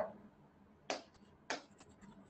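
Two faint, short taps of a pen tip striking the writing board as strokes are written, about a second in and again half a second later.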